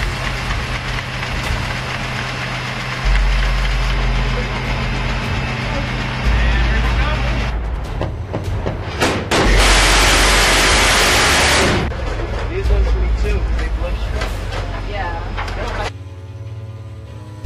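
Phalanx close-in weapon system's 20 mm six-barrel Gatling gun firing one continuous burst of about two and a half seconds, starting a little past the middle and stopping abruptly. Around it are steady ship machinery hum, wind gusts on the microphone and voices on deck.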